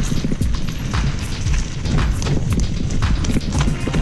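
Specialized Enduro full-suspension mountain bike rattling down a dirt singletrack: tyres rolling over leaves, roots and stones, with irregular sharp knocks and clatter from the chain and frame, over a steady low rumble of wind on the microphone.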